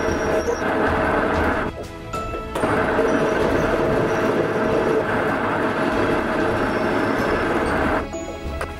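Metal lathe running with a cutting tool turning a metal bar: steady machining noise, with a brief dip a little under two seconds in.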